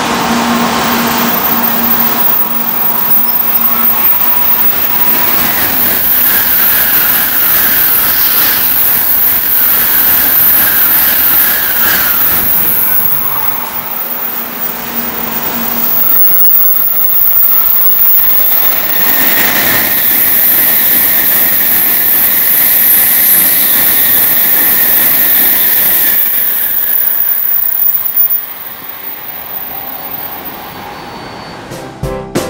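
Shinkansen trains passing through a station at high speed with a loud rushing roar of wheels and air, in two passes: the first fades out a little past halfway, the second builds right after and cuts off sharply near the end.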